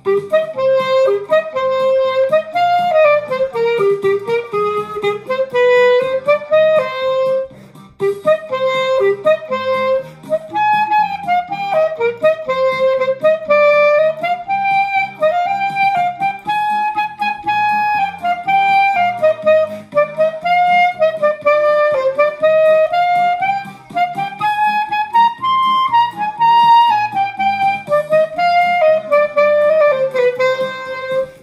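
Clarinet playing a folk melody of flowing, stepwise phrases, with a brief breath break about seven and a half seconds in.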